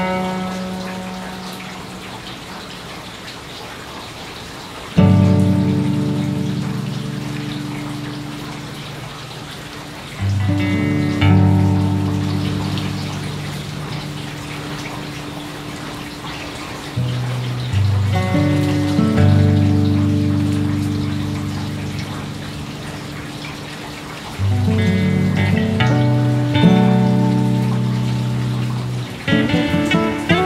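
Slow acoustic guitar music: a chord or short group of notes struck every few seconds and left to ring and fade, over a steady soft hiss.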